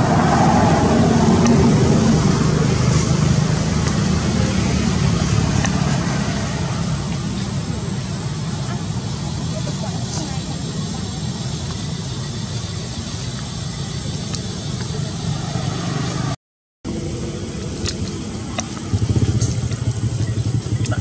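A steady low engine-like rumble with a background of distant voices and outdoor noise. It breaks off completely for a moment about three-quarters of the way through, then returns, with the rumble louder near the end.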